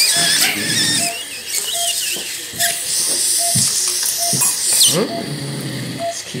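Patient monitor beeping with each heartbeat, a short steady beep about every 0.8 seconds, in time with the patient's pulse as read by the pulse oximeter. High, wavering squeaks sound over the beeps.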